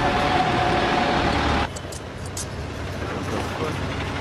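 Front-end loader's diesel engine running loud with a steady whine over a low rumble, cutting off abruptly about a second and a half in. A much quieter background with a few faint ticks follows.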